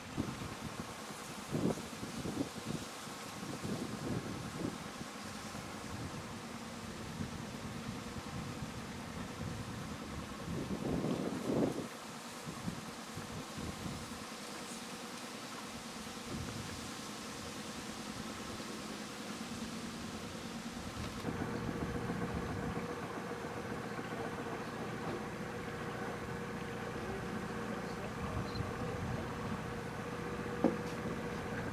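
Motor boat engine running steadily under way, with gusts of wind on the microphone in the first half; about two-thirds of the way through the engine note steps up and grows louder.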